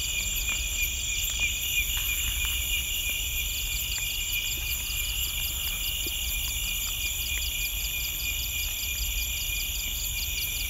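Night insect chorus: several insects, crickets among them, trill steadily at once in high, overlapping pitches. A fast pulsing call joins about three and a half seconds in and keeps going, over a low steady rumble.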